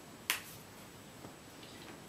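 A single short, sharp click about a third of a second in.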